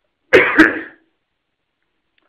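A man coughs twice in quick succession, clearing his throat, about a third of a second in; the whole burst lasts under a second.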